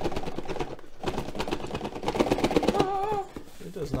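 Rapid crackling and rustling of packaging as an item is pulled out of a box. About three seconds in comes a short wavering cat's meow.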